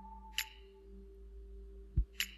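Faint steady hum of a few held tones, a higher one fading away within the first second, with a faint tick early on and a short low pop at the very end.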